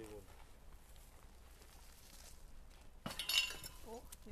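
A sharp metallic clink and clatter with a brief ringing tail, about three seconds in and lasting about half a second: the metal tail section of a spent rocket being knocked as it is handled.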